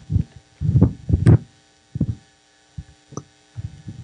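Microphone handling noise: a string of irregular dull low thumps and rubbing, loudest about a second in, as the microphone is handled and passed on.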